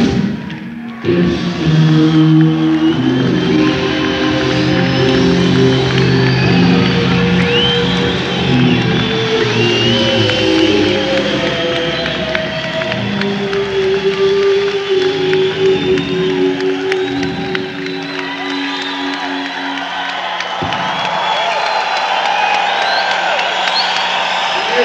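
Live rock band holding long sustained electric guitar and bass notes as a song draws to a close, with the audience cheering and whistling over it. The held notes thin out about 20 seconds in.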